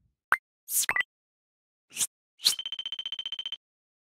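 Sound effects of an animated news-channel logo outro: a handful of short pops and blips, then a fast-pulsing high beep lasting about a second.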